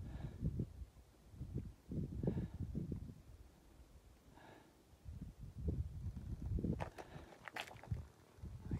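Wind buffeting the microphone in irregular low gusts, with a few soft breaths. Some sharp crunching clicks come near the end.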